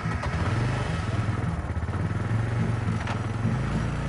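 Small engine of a CNG auto-rickshaw running steadily.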